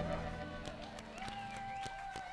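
Blues band playing softly under the band introductions, with one long held note coming in about halfway through and scattered light clicks.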